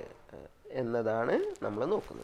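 A man's voice speaking a few words in a short phrase after a brief pause: the lecturer's own speech, not picked up by the transcript.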